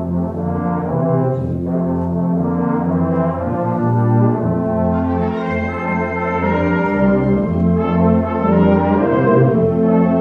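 Student concert band playing sustained, brass-heavy chords, the sound growing fuller and brighter about five seconds in.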